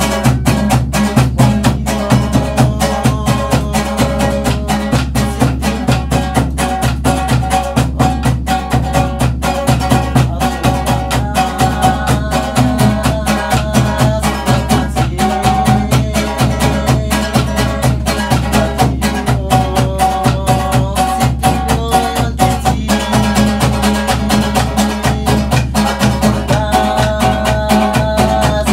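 Small string-and-drum folk ensemble playing a song: a violin melody over a strummed guitar, with a drum keeping an even, quick beat.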